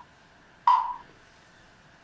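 A single short percussive click with a brief ringing tone that dies away quickly, over quiet room tone.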